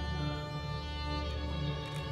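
Background music of sustained bowed-string notes, held steadily over a low hum.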